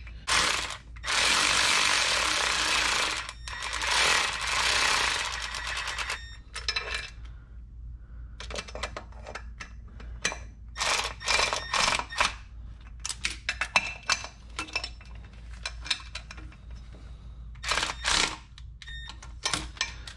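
Cordless electric ratchet running bolts in on an oil filter housing: two bursts of a few seconds each in the first quarter, then scattered metallic clicks and taps of the ratchet and socket, with another short burst near the end. The bolts are being run in snug, not yet torqued.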